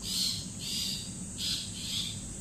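Dusk chorus of insects and birds: a steady high-pitched insect trill, with a short raspy chirp repeating about twice a second.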